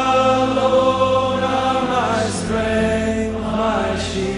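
A slow worship song, sung in long held notes over steady instrumental accompaniment. The sung pitch moves to a new note about two seconds in.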